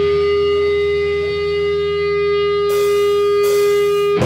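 Electric guitar feedback through an amplifier: one loud, steady ringing tone held throughout over a low amp hum, with two short bursts of hiss near the end.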